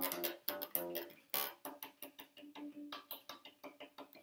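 Vintage Fender bass played unamplified, a run of plucked notes with one held note in the middle, with a ticking contact noise at the note attacks from its replacement Allparts bridge saddles, mostly on the D and G strings. The ticks come from a gap that lets the D and G saddles move against each other, which the player puts down to too little inward tension on the saddles.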